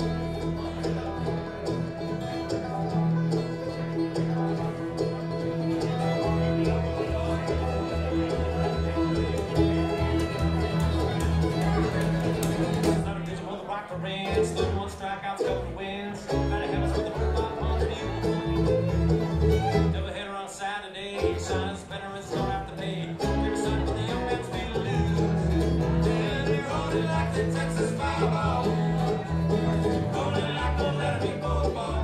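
Live acoustic bluegrass band kicking off an up-tempo tune: banjo, fiddle, acoustic guitar and mandolin over an upright bass plucking a steady pulse.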